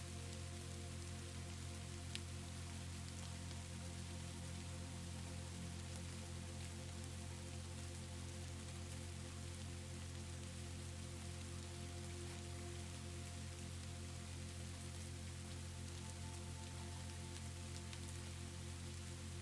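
Steady rain with soft, slowly held background music notes underneath, and a single brief click about two seconds in.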